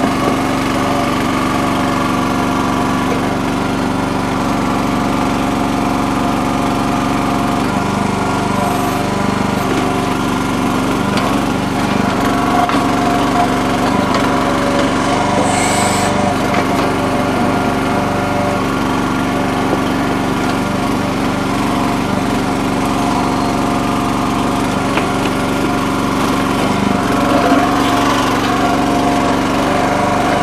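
Small gasoline engine of a Red Rock towable mini backhoe running steadily, driving the hydraulics as the bucket digs through wet, rocky mud.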